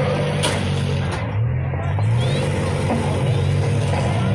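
Engines of several demolition-derby cars running together in a steady low rumble.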